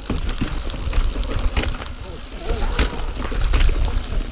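Niner Jet 9 RDO mountain bike rolling fast over a dirt singletrack: tyre noise on dirt with repeated sharp clacks and rattles of the chain and frame over bumps, under a low wind rumble on the microphone.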